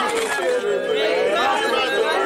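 Chatter of several people talking over one another, with no other sound standing out.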